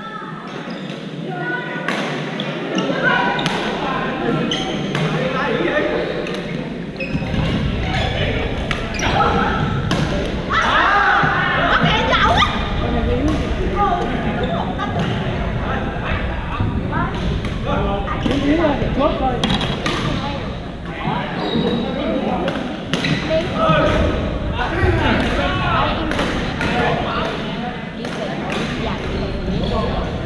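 Busy badminton hall: indistinct voices of many players talking and calling across the courts, with frequent sharp racket hits on shuttlecocks scattered throughout, echoing in the large gym.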